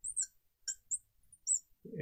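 Marker squeaking on a glass lightboard during writing: about six short, high-pitched squeaks, some sliding up or down in pitch, spread across the two seconds.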